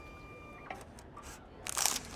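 Automated airport border e-gate responding to a scanned passport. A faint steady electronic tone sounds for the first half second, then a small click. Near the end a short hissing whoosh comes as the gate's glass doors swing open.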